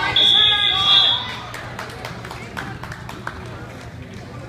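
A referee's whistle blown once: a single steady, high tone about a second long, heard over voices.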